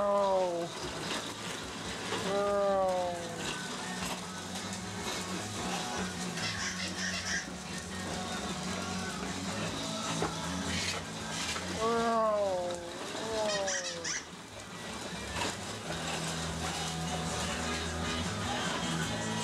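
A young child calling out four times in high cries that fall in pitch: at the start, about two and a half seconds in, and twice close together around twelve to thirteen seconds in. Music plays steadily underneath.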